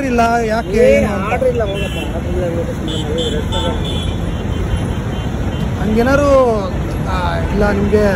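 Steady road traffic noise from vehicles passing on a city road.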